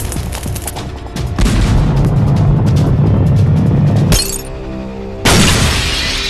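Cartoon sound effects over music: a long low rumbling crash, then a short held chord, then a sudden loud burst of shattering glass about five seconds in.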